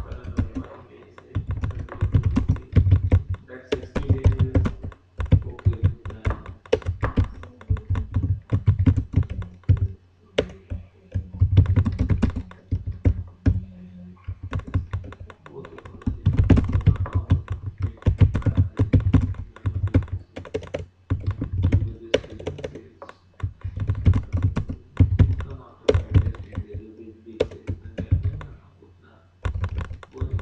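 Typing on a computer keyboard: runs of rapid keystrokes broken by short pauses.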